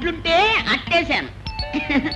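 Film dialogue: a person speaking, with several steady bell-like ringing tones sounding together near the end.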